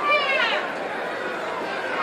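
Arena crowd chatter, with one voice shouting out in a falling pitch in the first half second.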